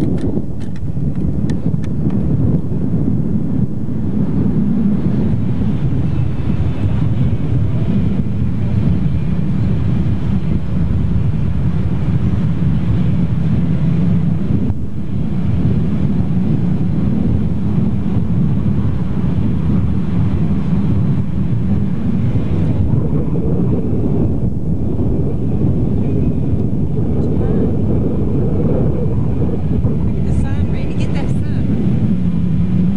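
Truck driving along a road, heard from inside the cab: steady engine and road noise with wind buffeting the microphone.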